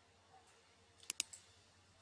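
Computer mouse button clicking: two sharp clicks close together about a second in, with a fainter third just after.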